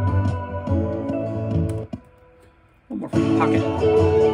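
Electric slide guitar on a Gibson ES-335, playing over a full backing mix. The music drops out for about a second in the middle, then comes back in with a wavering slide note.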